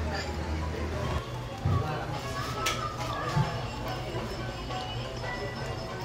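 Background music and faint voices in a restaurant dining room over a low steady hum, with one light click of tableware about two and a half seconds in.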